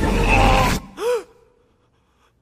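A loud, dense dramatic film soundtrack cuts off sharply just under a second in. A man then gives one short, loud voiced gasp that rises and falls in pitch as he jolts awake from a nightmare.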